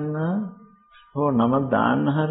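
A man speaking in a sermon: a drawn-out word, a pause of about half a second, then his speech resumes.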